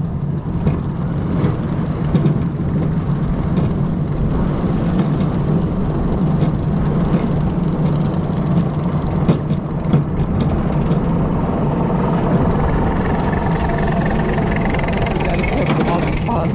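Zierer ESC roller coaster train being pulled up its lift hill: a steady low mechanical hum from the lift drive, with scattered light clicks from the train. A higher rushing noise builds over the last few seconds as the train reaches the top.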